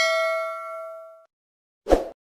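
A bell-like ding sound effect of several ringing pitches fades out over about a second and a half. A short thump follows near the end.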